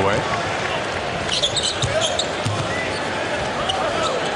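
A basketball being dribbled on a hardwood court, with steady arena crowd noise.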